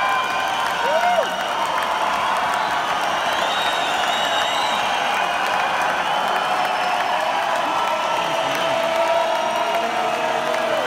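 Large arena crowd cheering and applauding without a break, with scattered shouts and whoops rising above it, one of them about a second in.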